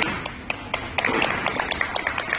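Scattered hand clapping from a small audience: irregular, separate claps several times a second.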